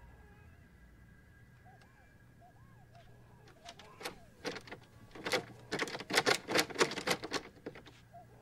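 A rapid, uneven run of sharp taps starting about halfway through and growing denser and louder near the end, about four a second at their thickest.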